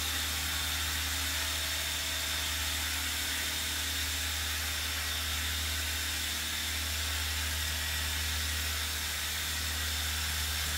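Continuous hiss of a pressurized sprayer wand misting cleaning solution onto carpet, with a steady low hum underneath.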